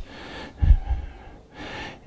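A man's breathing into a close microphone in a pause in his speech: a soft breath, a short low thump about two-thirds of a second in, and another inhale just before he speaks again.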